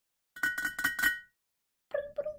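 A quick run of clicks with a high ringing tone, then a short vocal sound repeated about five times in quick succession: a noise given and then imitated.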